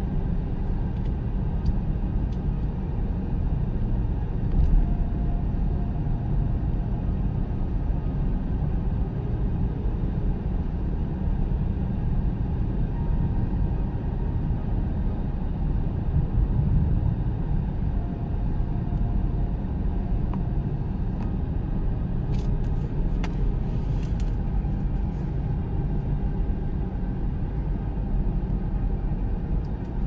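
Car driving at highway speed, heard from inside the cabin: a steady low rumble of tyre and engine noise.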